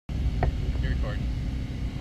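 Wind buffeting the action camera's microphone: a loud, uneven low rumble, with a sharp click of the camera being handled about half a second in.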